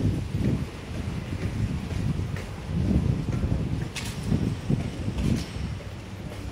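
Wind buffeting a phone's microphone in uneven low gusts, with a couple of short sharp taps about four and five seconds in.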